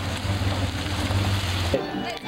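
Full-size van engine running as the van drives slowly past close by, a steady low hum. It cuts off abruptly near the end.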